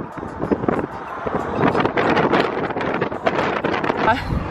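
Wind buffeting the microphone in a moving car, a steady rushing noise with fluttering gusts over the car's road noise.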